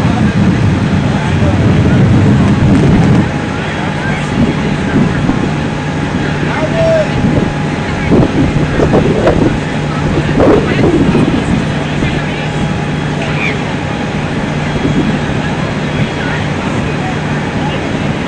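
A steady engine hum with a held low tone, louder for the first three seconds and then quieter, with faint voices mixed in.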